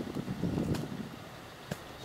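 Faint outdoor background: a low rumble that fades over the second half, with a small click near the end.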